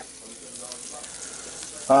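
Egg and a little water sizzling steadily in a frying pan as its lid comes off, a faint even hiss.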